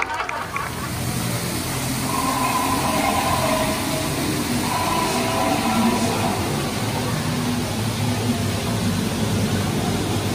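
Steady rushing noise with faint drifting tones: the ambience of a dark theme-park ride.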